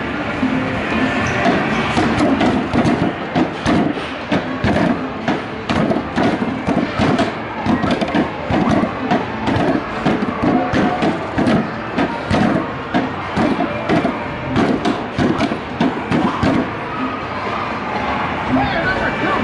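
Whack-a-mole arcade game being played: rapid mallet hits on the pop-up moles, several a second, over the machine's game music.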